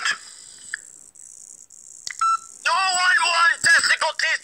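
A quiet pause with faint hiss, then a short run of telephone beep tones about halfway. From about two-thirds in, a very high-pitched voice talks over the phone without clear words.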